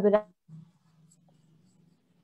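A woman's voice ends a word in the first moment, then near silence with only a faint low hum on the call line.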